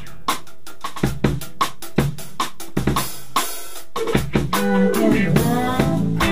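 Drum kit playing alone, snare and bass drum hits in a steady groove. About four seconds in, the rest of the band comes back in with pitched instruments.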